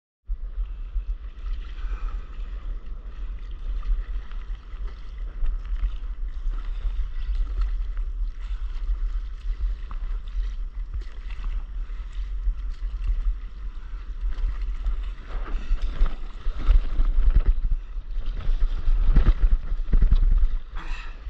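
Wind buffeting a camera microphone as a steady low rumble, over water lapping around a stand-up paddleboard on the sea. From about fifteen seconds in come louder, irregular splashes of paddle strokes in the water.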